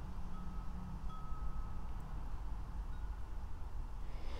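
Wind chimes ringing in gusty wind: a few clear single tones, two of them held for about a second, then shorter higher pings. Wind rumbles on the microphone throughout.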